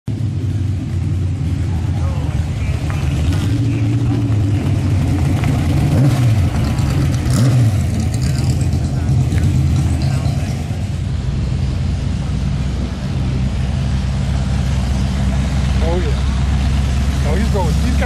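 Ford GT40 and Lola GT Mk6 mid-engined V8 sports racing cars driving slowly past one after another, their engines giving a steady low note.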